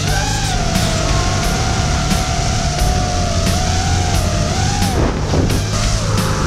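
Brushless motors and three-blade props of a 5-inch FPV racing quadcopter whining, the pitch wavering with throttle and dropping sharply about five seconds in as the throttle is cut, over background music with a steady beat.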